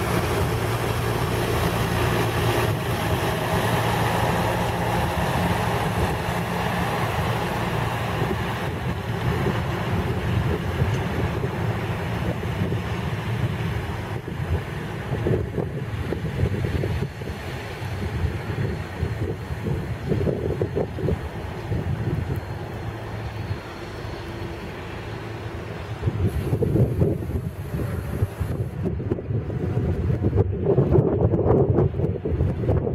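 Rail rescue-train vehicle PRT.00 03 running past while hauling a string of empty flat wagons, its engine hum and rolling noise fading as it moves away. Wind buffets the microphone near the end.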